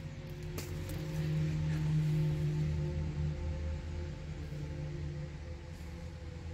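A steady low hum of unchanging pitch, swelling a little in the middle, with a single faint click about half a second in.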